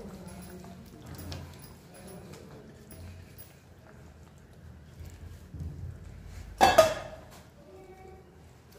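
Paneer cubes sliding off a steel plate into a kadhai of thick gravy, with soft clinks of the plate against the pan. About seven seconds in comes one loud, ringing metal clank, likely the steel plate knocking the kadhai as it is taken away.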